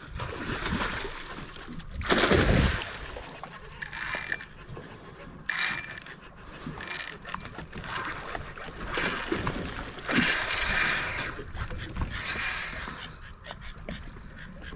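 Water splashing in irregular bursts, loudest about two seconds in, as a hooked fish thrashes at the surface beside the boat.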